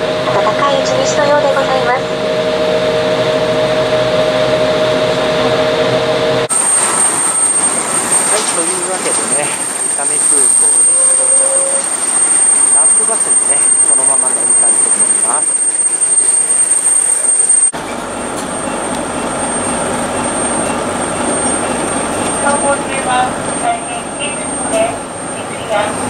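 Jet airliner noise at the stand: a steady two-note hum inside the Embraer 170 cabin after arrival, switching about six seconds in to the open apron, where a steady, very high-pitched jet turbine whine sounds over engine noise. Near 18 s the whine drops away to a lower general apron hum with faint voices.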